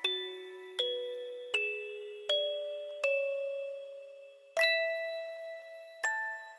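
Music box playing a slow melody, one plucked note about every three-quarters of a second, each ringing and fading. About four and a half seconds in, a louder chord is struck and rings on.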